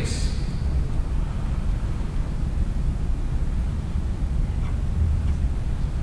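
Steady low rumble and hiss of lecture-hall room noise with no one speaking, and two faint ticks near the end.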